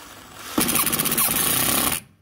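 Cordless impact driver spinning up and then hammering rapidly from about half a second in, driving a screw through the plastic drawer rail into the wooden tabletop. It stops suddenly at the end.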